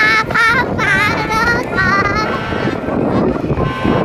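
A high voice singing with a wavering pitch for about two seconds, then a stretch of unpitched outdoor noise: crowd murmur and wind on the microphone.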